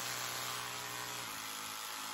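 Oral-B Smart 1500 electric toothbrush running with a steady buzz, its brush head pressed hard enough to light the red pressure-sensor warning, the sign of brushing too hard.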